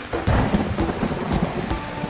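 A sound effect of steady rushing noise with an uneven low rumble, under soft background music.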